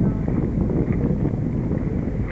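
Wind buffeting the microphone on a boat out on the water: a steady low rumble.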